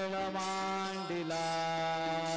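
Devotional aarti music: sustained melody notes over a steady drone, the melody stepping up to a higher held note a little past a second in.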